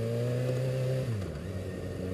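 Kawasaki ZX-6R 636's inline-four engine running at steady low revs while riding; its pitch creeps up slightly, then drops about a second in as the revs fall.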